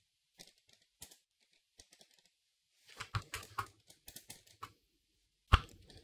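Computer keyboard typing in short bursts: a few scattered keystrokes, then a quicker run of keys about three seconds in, and one louder click near the end.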